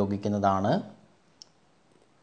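A spoken word ending under a second in, then near quiet broken by a single short, sharp click.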